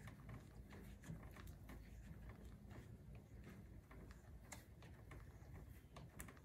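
Near silence, with faint rustling and scattered light ticks of hands squeezing and pushing a soap-lubricated foam grip cover onto a motorcycle's handlebar grip.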